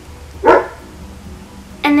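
A single short, sharp dog bark about half a second in, over soft background music.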